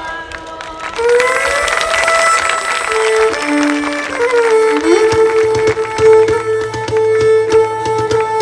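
Traditional Greek folk dance music: instruments come in loudly about a second in, playing long held melody notes with rising slides over regular percussion strokes.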